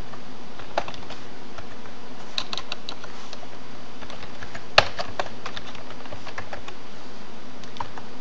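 Typing on a computer keyboard: irregular keystrokes in small runs, with one louder key strike about five seconds in, over a steady low background hum.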